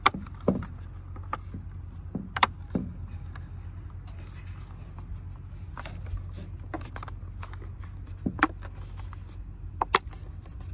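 A hard plastic waterproof phone case being snapped together and squeezed around its edges by hand, giving a handful of sharp plastic clicks and snaps at irregular moments, over a steady low rumble.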